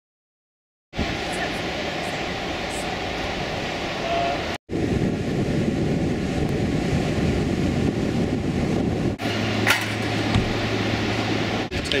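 Surf breaking on a sandy beach: a steady roar of waves that starts after about a second of silence and drops out for an instant a few seconds in.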